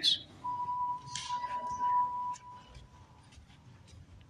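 A single steady electronic-sounding tone, like a beep, held for about two seconds and then fading out, followed by a few faint clicks.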